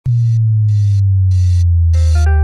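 Intro of an electronic dance remix: a loud, deep bass tone slowly sliding down in pitch, with short hissing beats about every 0.6 seconds over it.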